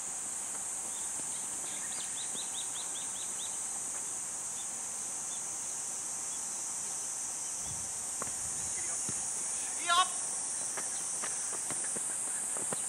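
Steady high-pitched drone of summer insects, with a quick run of about eight short high chirps about two seconds in and a brief distant shout near the ten-second mark.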